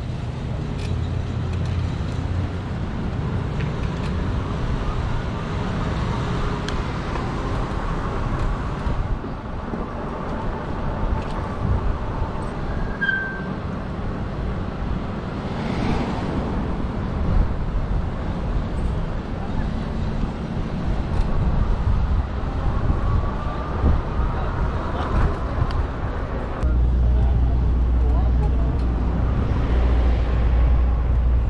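Wind on the microphone and road noise from a moving electric bike in city traffic: a steady rushing rumble, with a short high chirp about halfway and the low rumble growing much heavier near the end.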